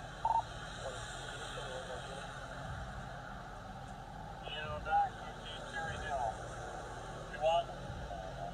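Indistinct, low voices in conversation at a car window over a steady hiss of rain and street noise. A single short electronic beep sounds just after the start.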